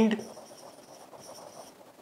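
Marker pen writing on a whiteboard: faint, irregular scratching strokes as a word is written out.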